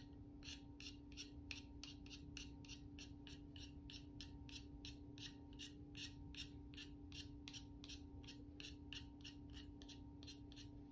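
Faint rasping of a cutter blade lightly scraping a soft pastel stick in quick, even strokes, about three a second, shaving pastel dust off the stick.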